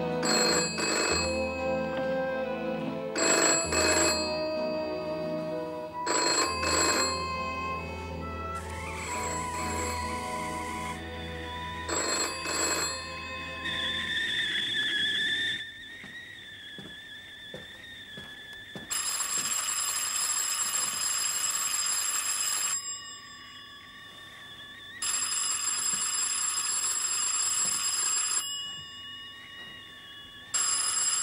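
Background music for about the first half, then a man whistling a tune. The whistling is twice cut off by an electric doorbell, each ring lasting three to four seconds.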